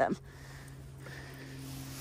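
A steady low hum under faint background hiss, holding at one pitch after a last spoken word at the very start.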